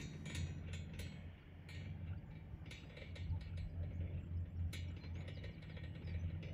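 Chairlift running, heard from a moving chair: irregular mechanical clicks and clacks over a steady low hum.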